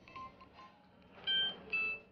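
Phone keypad tones as a number is dialled: a few short beeps, the two loudest close together near the end.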